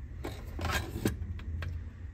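Plastic case of a Milton Bradley Simon electronic game being handled and flipped over on a wooden tabletop: a few light clicks and scrapes.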